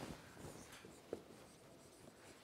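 Faint strokes of a marker writing on a whiteboard, with a small click about a second in.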